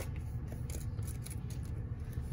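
A small clear plastic tub being opened and handled, with a few light plastic clicks and rustles over a steady low hum.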